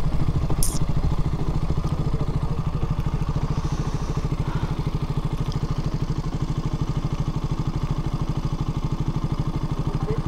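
A KTM Duke's single-cylinder engine idling steadily with an even, quick pulse. There is a brief click about half a second in.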